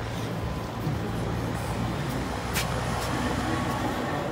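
Street traffic noise with a vehicle engine running steadily, and a short click about two and a half seconds in.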